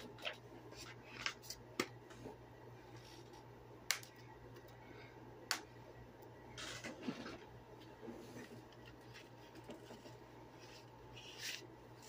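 Faint handling of a plastic 4K Ultra HD disc case: scattered light clicks and short rubbing sounds, over a steady low hum.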